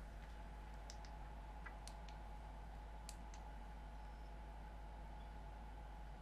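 Faint steady hum with a handful of short, sharp light clicks, scattered over the first three and a half seconds, from material and parts being handled at an industrial sewing machine. No steady stitching rhythm is heard.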